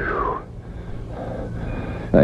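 Steady low rumble of a car being driven, heard from inside the cabin, with a short falling tone in the first half second.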